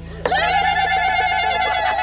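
Women ululating (zaghareet) in welcome: a high, trilling cry that starts abruptly and is held on one steady pitch for about two seconds.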